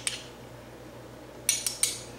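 A single light click, then about a second and a half in, three or four quick light clinks of a measuring spoon tapping against the rim of a stainless steel cooking pot.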